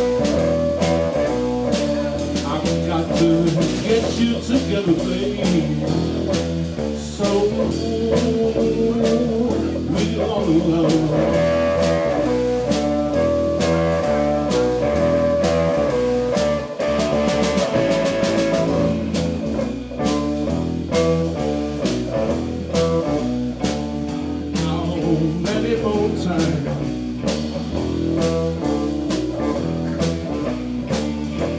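Live band playing an amplified blues-rock number on electric guitars and drum kit, with a steady drum beat.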